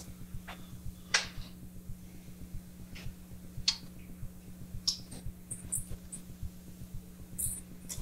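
Laptop keyboard keystrokes, sparse and irregular single clicks a second or so apart, over a steady low hum.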